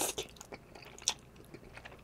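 Close-miked eating of thick, creamy truffle pasta noodles. The tail of a slurp comes right at the start, then chewing with wet mouth clicks, the sharpest about a second in.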